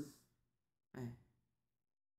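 A voice saying "She" at the start, then a second short, breathy vocal sound about a second in.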